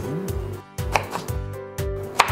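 Chef's knife cutting a head of green cabbage into quarters on a wooden cutting board: several crisp knife strikes against the board in the second half.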